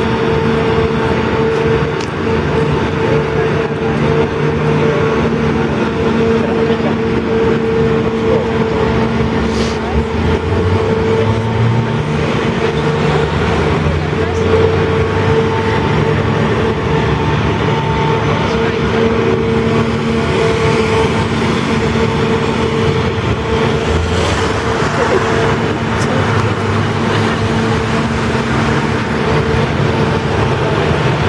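Engine and hydraulic drive of the Grand Éléphant walking machine running with a steady droning hum, rising briefly in pitch about ten seconds in as the load changes. Voices of people around it are heard underneath.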